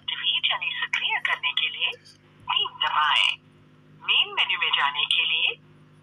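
Vi (Vodafone Idea) customer-care automated phone menu voice reading out options, heard through a smartphone's loudspeaker with a thin, telephone-line sound. It comes in three phrases, with short pauses about two seconds in and about four seconds in.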